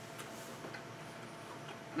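Faint sounds of a mouth chewing a Twix bar: a few soft, irregular clicks over a steady low room hum.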